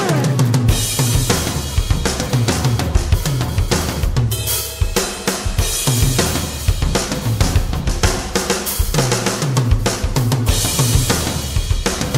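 Rock drum kit playing a fast, busy instrumental break, with rapid strikes on bass drum, snare and cymbals that dip briefly about four and a half seconds in.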